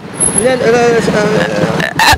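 A small motor scooter's engine running as it passes close by in street traffic, steady for over a second and then fading as speech resumes.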